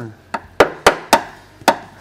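A long screwdriver jabbing into the rusted-through steel floor pan of a Ford E250 van, about five sharp knocks as the tip strikes the corroded metal.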